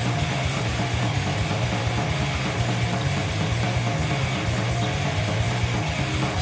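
Heavy metal band playing live: distorted electric guitars over bass and drums, loud and unbroken.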